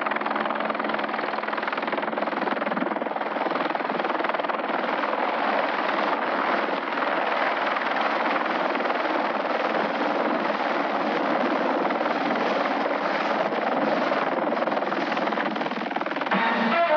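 Light helicopter flying in low and hovering, its rotor and engine making a steady, dense noise.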